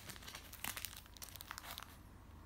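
Plastic clear file crinkling and crackling as it is handled and lifted, in an irregular run of crackles that is loudest about a third of the way in and again near the end.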